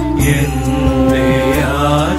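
Devotional hymn sung in a chant-like style over sustained instrumental backing, a new sung phrase beginning just after the start.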